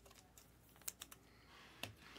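Faint handling of trading cards: a few sharp clicks, three in quick succession about a second in and another near the end, as cards are handled and one is slid into a plastic sleeve.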